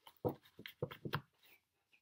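A tarot deck being shuffled by hand: a few short, soft strokes of the cards in the first second or so.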